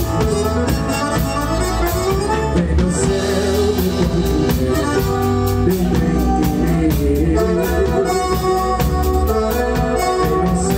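Live forró band playing: piano accordion, acoustic guitar, electric bass and drum kit over a steady beat, with a man singing into a microphone.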